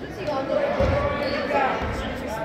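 A basketball thudding on a wooden court twice, about a second apart, amid voices of players and spectators, all echoing in a large sports hall.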